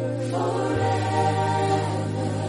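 Choral music: voices singing slow, held chords over a sustained bass note, the chord shifting a little under a second in.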